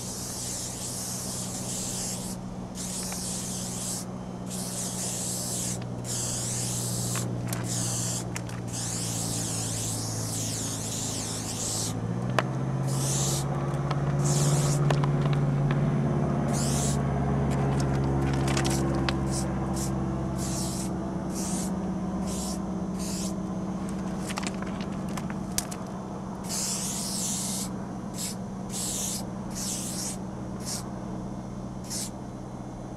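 Aerosol spray paint can hissing in repeated bursts of varying length, with short gaps between strokes. A steady low hum runs underneath and shifts in pitch about twelve seconds in.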